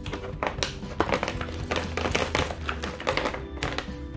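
Potting mix poured from a plastic bag into a plastic pot: a dense, rapid crackle and patter of soil and grit landing, with the bag rustling, over steady background music.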